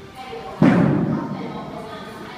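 A single heavy thud about half a second in, dying away slowly in the echo of a large gym hall.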